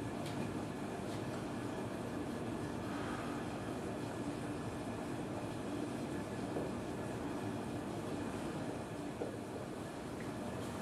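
Steady low hum and hiss of room tone, with a few faint light ticks.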